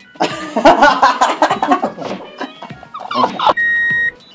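People laughing heartily for about three seconds, then a steady high-pitched electronic beep of about half a second near the end: a test-card tone laid over a cut to colour bars.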